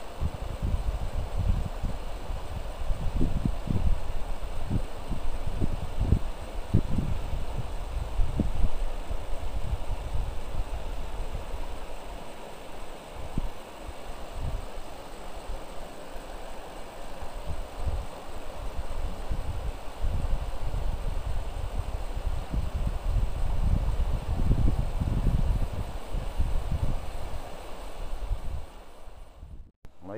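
Wind buffeting the microphone in irregular low gusts over the steady rush of a fast-flowing river's current.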